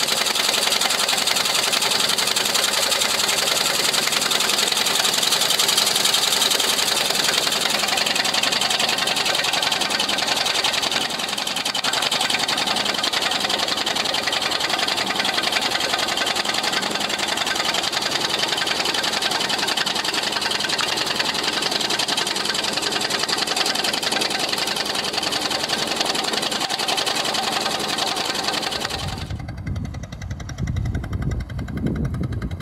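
Single-cylinder inboard engine of a wooden motorboat running steadily with a fast, even clatter. Near the end the sound cuts to a lower rumble.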